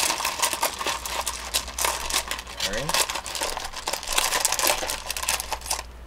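Small crystals and tumbled stones being stirred and shaken by hand in a bowl: a dense run of clicking and clattering.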